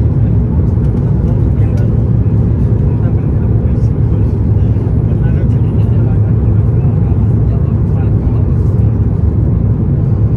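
Steady, loud low rumble of airflow and Rolls-Royce Trent 7000 engines heard inside the cabin of an Airbus A330-900neo on approach, with the flaps extended.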